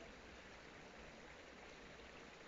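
Near silence: a faint, steady hiss of background ambience.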